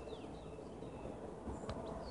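Faint outdoor background noise with a few faint, distant bird chirps.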